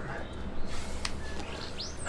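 A wild bird chirping: a short rising call near the end, over faint background with a light click about halfway through.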